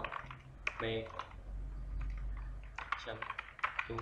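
Computer keyboard typing: a quick run of separate keystrokes as a line of code is entered.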